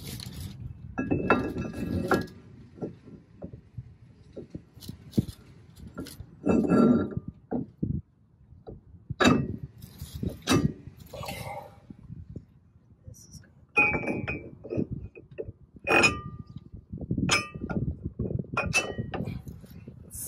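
Steel disc brake rotor and wheel adapter being handled and fitted onto a front hub: irregular metal clinks and clangs, a few of them ringing briefly.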